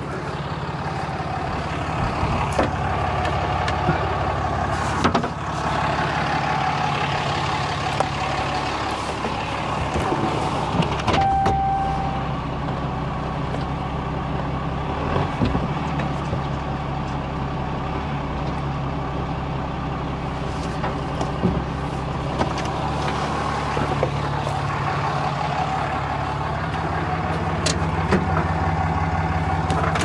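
Pickup truck engine idling steadily; its note drops about nine seconds in and rises again later. There is a short beep just after ten seconds and scattered light clicks and knocks.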